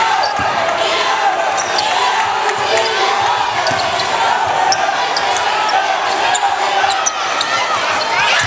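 Live basketball game sound in an arena: many voices from the crowd and players, a basketball bouncing on the hardwood floor, and short high sneaker squeaks.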